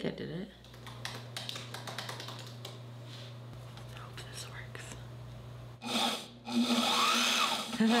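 Heavy-duty sewing machine: a steady low hum with small clicks and taps as it is threaded, then its motor running loudly, first briefly and then for a longer run near the end.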